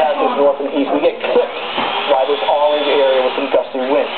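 Speech only: a man's voice, a TV weather forecaster talking, played from a television set.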